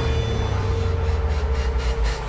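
Movie trailer soundtrack: a deep, steady low drone under a single held note, with faint regular pulses coming in during the second half.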